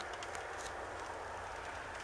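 Light rain falling, a faint steady hiss.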